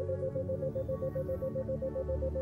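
Ambient synthesizer pad music holding a steady chord, with an isochronic tone near 528 Hz pulsing on and off about seven times a second. The 7 Hz pulse is meant to draw the brain into the theta state.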